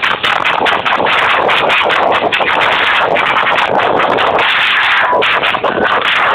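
Loud electronic dance music playing over the sound system of a rave tent.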